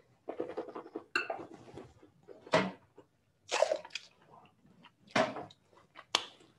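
A wine taster sipping white wine and slurping and swishing it in the mouth, drawing air through it: a series of about five short sucking, hissing noises.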